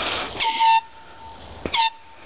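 Handheld canned air horn blown twice, a longer blast and then a short one, each a steady pitched honk that rings on faintly afterwards. The blasts signal the start of an airsoft game.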